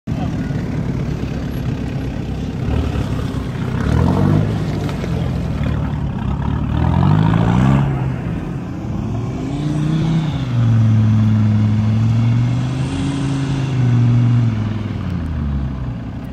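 Off-road SUV engine revving hard as it drives through a muddy bog, its pitch climbing with the throttle several times and then rising and falling under load.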